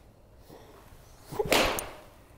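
Golf shot with an Edel 54° wedge: a short rising swish of the club through the air, then a crisp strike as it contacts the ball off the hitting mat about a second and a half in.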